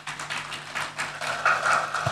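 Audience applause, many hands clapping at once, fullest about halfway through. A faint steady hum from the hall's sound system runs underneath.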